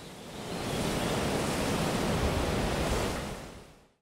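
A steady rushing noise that swells in over the first second, holds, and fades out near the end.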